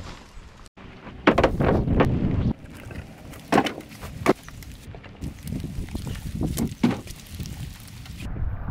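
Split firewood pieces knocking against each other as they are set by hand into a pickup bed: several sharp, hollow clunks. About a second in, wind rushes loudly over the microphone for a moment.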